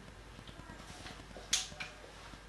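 Two sharp clicks from a whiteboard marker being handled as writing stops, the first and louder one about one and a half seconds in and a fainter one just after it.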